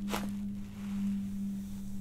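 Neck joints cracking in a quick, sharp pop during a chiropractic cervical adjustment, just after the start, over a steady low hum.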